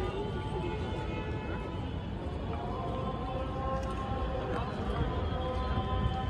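Background murmur of a crowd with indistinct voices, and from about halfway through, several steady held musical tones over it.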